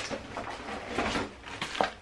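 Rustling and a few light knocks of groceries being handled and taken out of a plastic shopping bag.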